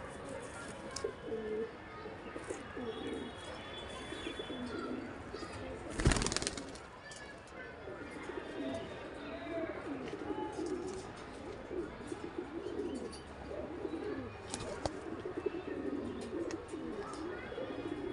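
Domestic pigeons cooing over and over in low, wavering calls. A single loud thump about six seconds in.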